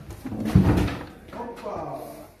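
A dull, low thud about half a second in, followed by men's voices near the end.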